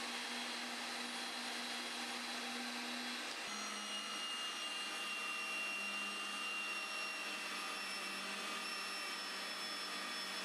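Ridgid 300 pipe threading power drive running, its electric motor giving a steady hum and whine as it turns steel pipe for reaming and thread cutting. The tone shifts slightly about three and a half seconds in.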